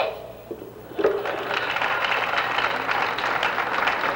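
Crowd applauding at the close of a speech, the clapping starting about a second in and going on steadily.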